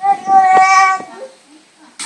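A toddler's voice holding one loud, high-pitched note for about a second, a sung squeal at a steady pitch, with a couple of light knocks during it.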